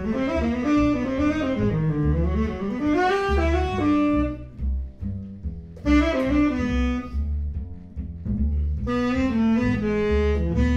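Tenor saxophone and upright double bass playing jazz. The saxophone plays melodic phrases, breaking off twice, about halfway and again shortly before the end, while the bass carries on underneath with steady low notes.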